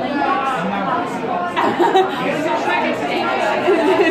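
Several people talking over one another in a room: background chatter with no single clear voice.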